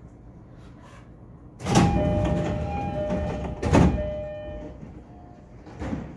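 Passenger doors of a JR East E231 series commuter car opening at a station stop: a sudden loud rush of air about two seconds in, then a chime of two alternating tones for about three seconds, with a second air rush just before four seconds.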